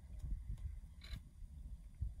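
Faint low rumble of wind noise on the microphone, with a brief soft rustle about a second in.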